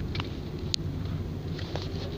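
Steady low rumble of a car's engine and tyres heard from inside the cabin while driving, with one short, sharp click about a third of the way through.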